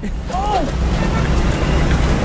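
Road traffic on a busy city street, a steady noise with a low rumble, with a brief voice sound about half a second in.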